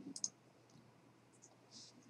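A few faint, short clicks of a computer mouse in near-silent room tone.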